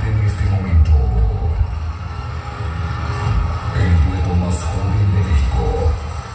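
Loud live band music played through a PA system, with a heavy bass line pulsing steadily.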